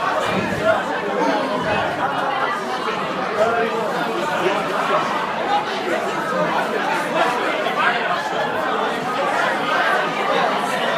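Comedy club audience chattering, many voices talking over one another at once, picked up by a phone at the back of the room.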